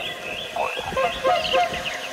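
Several birds calling at once: a busy mix of short chirps and quick whistled notes, overlapping.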